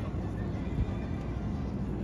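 Steady low rumble of city street noise, with faint indistinct sounds over it.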